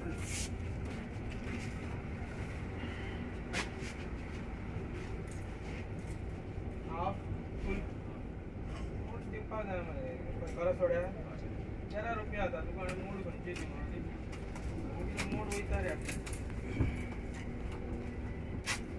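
Cabin of an Olectra electric bus moving off: a steady low rumble with scattered knocks and rattles, and faint passenger voices now and then.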